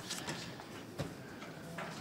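Quiet room tone in a pause between speakers, with one faint click about a second in.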